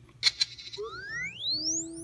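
Electronic droid chirps of BB-8, played by the Sphero BB-8 app through a tablet speaker: a couple of quick beeps, then a long whistle sweeping steeply up in pitch.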